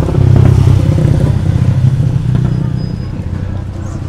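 A motor vehicle's engine running close by as it passes, loudest about half a second in and fading over the following few seconds.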